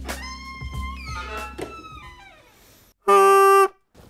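Bagpipe sounding one loud, steady reedy note for under a second, starting suddenly about three seconds in and cutting off abruptly. Before it, faint wavering music fades out.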